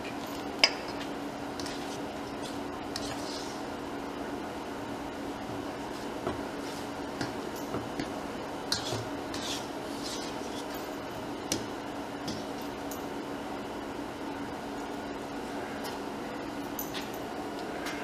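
A fork stirring soft, wet dumpling dough in a stainless-steel mixing bowl: quiet squishing with scattered clinks of metal on metal, the sharpest about half a second in. A steady low hum sounds throughout.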